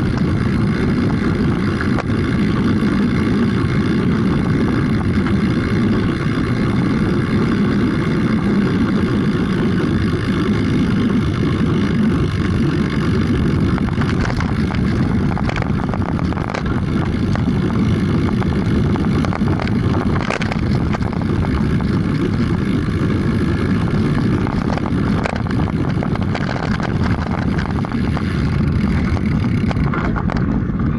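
Wind rushing over the microphone of a bicycle-mounted camera on a fast descent, with steady road rumble and scattered knocks and rattles as a stiff frame passes the vibration of a rough road surface into the mount.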